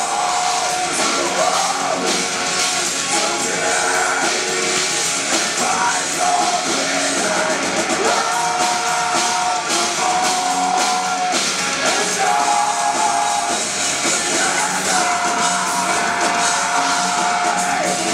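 Melodic death metal band playing live through a venue PA: distorted guitars, bass, drums and keytar at a steady loud level, with a lead melody of long held notes in the second half.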